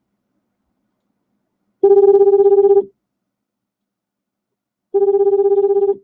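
Telephone ringback tone of an outgoing call: two buzzy rings of about a second each, about three seconds apart, while the line rings unanswered.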